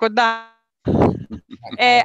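Voices over a video call: a word trailing off, then a short rasping vocal sound about a second in, then talk starting again.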